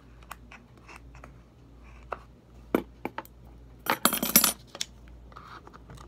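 Small metal scissors clicking and scraping in the plastic nozzle of a glue bottle as the dried, clogged glue is poked out. Scattered sharp clicks, with a quick run of metallic clinks about four seconds in.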